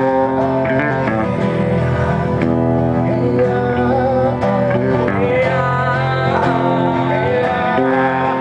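A man singing with his own strummed acoustic guitar in a live performance.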